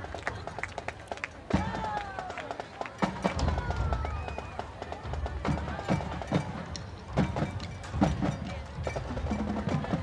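High school marching band playing on the field, its drum hits standing out, heard from behind the band as it plays toward the far stands.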